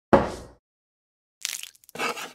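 A knock of a plastic measuring cup on a plastic cutting board. About a second and a half in comes a short, crackly clatter and splash as the cup of water tips over onto the board.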